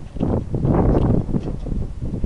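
Manual wheelchair wheels rolling up a textured aluminium ramp: a loud rumbling rattle, strongest for about a second and then easing off.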